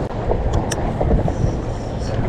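Wind buffeting the microphone with a steady, uneven rumble, and a few small clicks a little under a second in.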